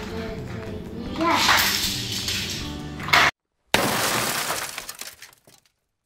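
Background music, then a loud crashing, shattering sound just after a short gap of dead silence; the crash dies away over about two seconds and ends in silence.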